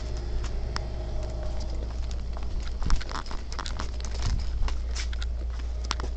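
Hand-held phone being carried while walking: scattered soft clicks and taps of handling and footsteps over a steady low hum, busiest in the middle seconds.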